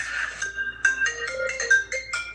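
Electronic keyboard playing a quick run of short, separate high notes.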